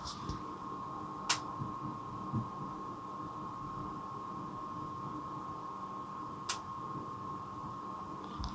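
Power Mac G5 iMac running quietly during boot: a steady hum with a thin steady whine over it. The cooling fans are holding steady instead of ramping up and down, the sign that the hard-drive thermal sensor fault is cured. Two brief clicks, about a second in and near the end.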